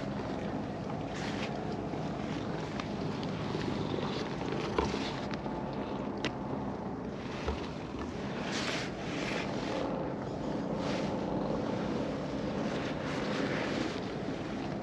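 Domestic cat purring steadily while being stroked, with the soft rustle of a hand rubbing its fur coming and going over it. A short sharp tick about five seconds in.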